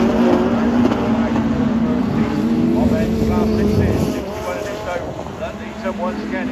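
Engines of several autograss racing cars running hard around a dirt oval, a steady drone that fades about four seconds in as the cars move away.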